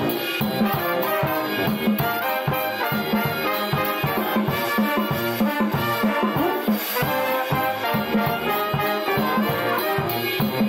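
A New Orleans-style brass band playing: trumpets, trombones and saxophone over a drum kit keeping a steady beat.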